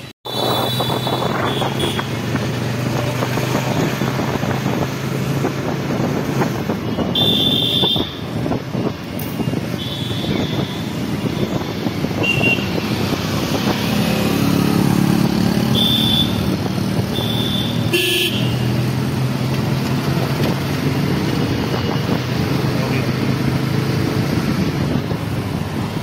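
Motorcycle ride through city traffic: the engine runs steadily under road noise, while vehicle horns give several short toots along the way.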